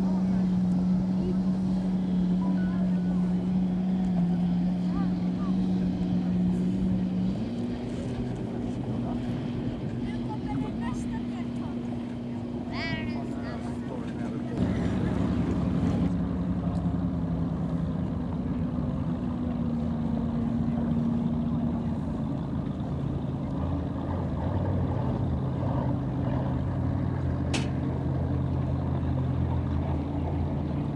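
Motorboat outboard engines running: a steady drone that steps up in pitch about a quarter of the way in and turns louder and rougher about halfway through.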